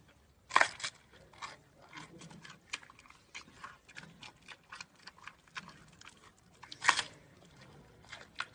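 Giant panda biting and chewing a bamboo shoot: a run of short, crisp crunches and cracks. Two loud crunches come about half a second in and again about seven seconds in.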